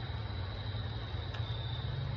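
Steady low hum under a soft, even hiss: a small tabletop water fountain's pump running with water trickling over it.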